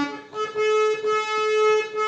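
Hand-pumped harmonium playing a melody with a reedy, sustained tone: a short note, then about a third of a second in one long held note.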